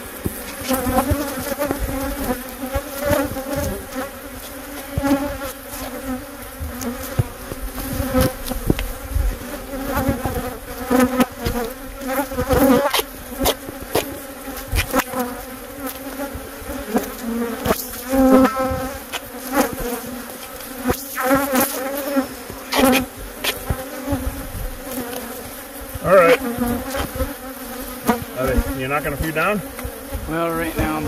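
A dense swarm of Africanized (killer) honey bees buzzing loudly around the microphone, a steady drone broken by many sharp clicks and knocks. The bees are defensive, stirred up by their hive being taped shut.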